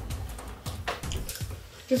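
Eating sounds from people eating noodles with chopsticks: a handful of short, wet clicks and smacks spread over two seconds.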